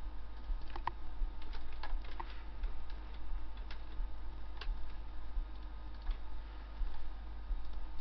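Scattered light clicks of a computer mouse and keyboard, a handful in the first couple of seconds and a few more around four to five seconds in, over a steady low electrical hum.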